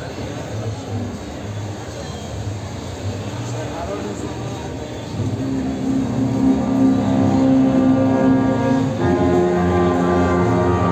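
Crowd chatter, then about five seconds in a symphonic wind band of clarinets and saxophones begins a bolero with long held chords, louder than the chatter, moving to a new chord near the end.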